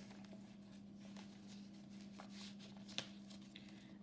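Faint rustling and sliding of cardstock paper tags being handled, with a small sharp tick about three seconds in, over a low steady hum.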